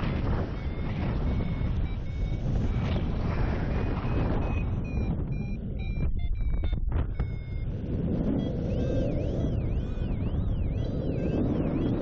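Wind rushing over the microphone of a paraglider in flight, with a flight variometer's electronic tones above it: short beeps at first, then, from about two-thirds of the way through, a siren-like tone warbling up and down about twice a second. This siren tone is the variometer's sink alarm, the sign that the glider is descending and finding no lift.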